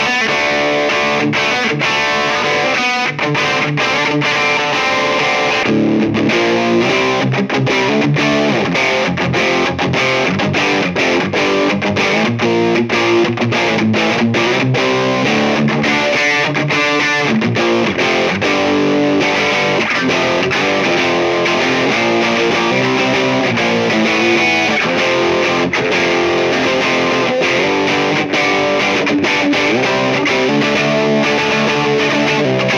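Electric guitar driven by a Walrus Audio Warhorn overdrive pedal into a Marshall JCM900 tube amp set on the edge of breakup, heard through a speaker-cabinet simulation. It plays a continuous run of distorted picked chords and single notes at a steady loudness.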